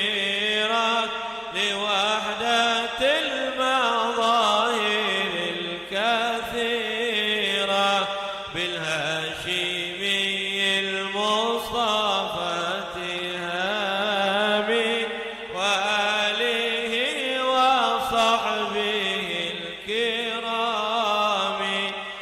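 A man chanting an Arabic munajat, a devotional supplication, into a microphone. He sings it in long, ornamented phrases that waver and glide in pitch, with short breaks between them.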